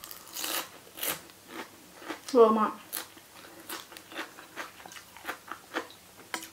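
Crunching and chewing of a crisp raw green vegetable in the mouth, a run of short sharp crunches spread over the few seconds.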